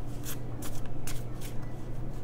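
A tarot deck being shuffled by hand, four quick papery swishes of the cards about two a second, over a steady low hum.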